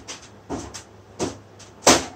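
Three short scuffing noises about two-thirds of a second apart, the last and loudest near the end, with faint ticks between: handling noise close to the microphone.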